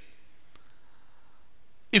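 Low steady room hiss with one faint click about half a second in, and a man's voice starting again at the very end.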